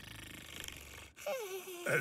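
Cartoon snoring from an anime soundtrack: a faint, low, fluttering snore, then a higher tone that falls in pitch in the last second.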